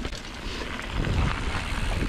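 Wind buffeting the action-camera microphone over the rumble of mountain bike tyres rolling on a gravel road.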